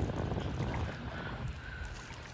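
Wind buffeting the microphone outdoors: a steady low rumble under a faint hiss.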